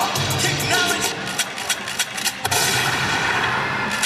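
Dance-routine music mix with a sharp percussive beat; about two and a half seconds in, a sharp bang is followed by a noisy wash lasting about a second.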